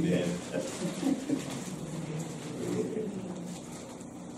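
A man's low, indistinct voice murmuring, fading toward the end.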